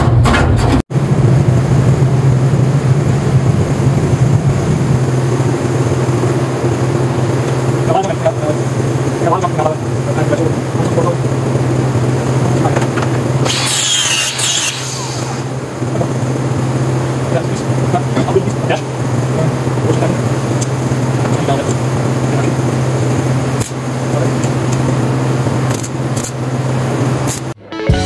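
Electric angle grinder running with a steady motor hum as it works a steel part. About halfway through comes a short burst of loud, high-pitched grinding as the disc bites into the metal.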